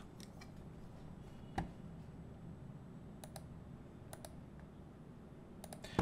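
A few sharp clicks from a computer mouse and keyboard, some single and some in quick pairs, the loudest about a second and a half in.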